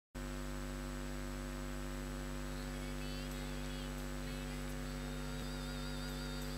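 Steady electrical mains hum, a low buzz with a stack of overtones that holds level throughout.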